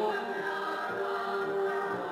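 Choir singing long held chords, heard through the loudspeaker of a Grundig 4017 Stereo valve radio, with little treble.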